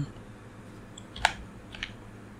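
Computer keyboard keystrokes: three key presses, a louder one about a second in and two fainter ones close together near the end.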